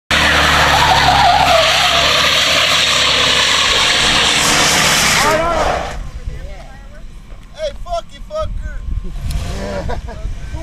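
Two-door full-size SUV doing a burnout: engine revving hard with the rear tires spinning and squealing against the pavement. The noise cuts off about six seconds in, leaving voices.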